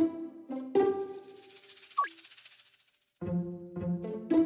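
Playful background music of short string notes. About two seconds in there is a quick falling pitch glide, then the music fades to a brief silence. New plucked notes begin near the end.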